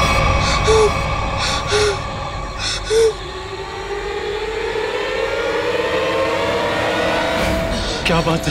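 Suspense background score: sustained drones with three short accents in the first three seconds, then a slow swell that rises in pitch over the last few seconds.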